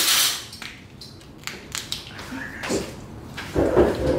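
Cooked lobster shell being cracked and pulled apart by hand: a brief crackle, then a scatter of short, sharp cracks and clicks. A louder, low sound comes near the end.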